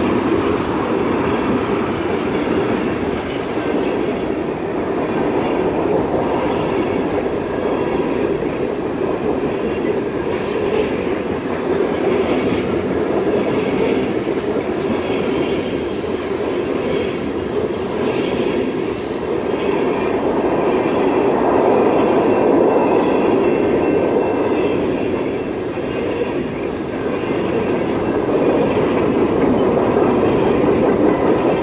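Freight cars (tank cars and covered hoppers) rolling past close by: a steady rumble of steel wheels on rail with light clicking clatter from the wheelsets. It swells somewhat about two-thirds of the way through and again near the end.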